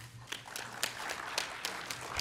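Audience applause: scattered hand claps that build up and grow denser.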